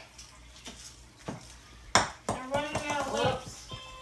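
Small clicks and a sharp knock from handling a Christmas ornament, a brief voice, then near the end an electronic musical ornament starts sounding steady electronic tones.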